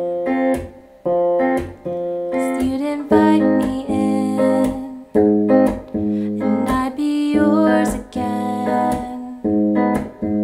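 Electric guitar with a capo on the third fret, fingerpicked in a repeating pattern: a bass string plucked, then the top three strings plucked together. Each figure lasts about a second and rings briefly. The chords move from D to F to F minor shapes.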